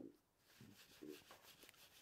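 Near silence, with a few faint rubbing sounds from a wheel brush being worked between the spokes of a wet alloy wheel.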